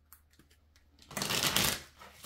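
A deck of tarot-style reading cards being shuffled by hand. A few faint clicks come first, then a loud burst of shuffling about a second in that lasts most of a second.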